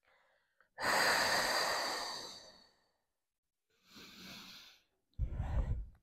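A woman's long exhale through the mouth, loudest at the start and fading over about two seconds, then a quieter breath about four seconds in, while she holds an abdominal curl-up. A short low rumble comes near the end.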